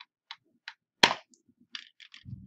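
Computer keyboard keys clicking a few times, with one loud, sharp key strike about a second in as a typed command is entered.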